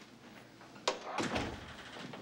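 A door opening and closing: a sharp latch click about a second in, then a heavier thud as the door swings to.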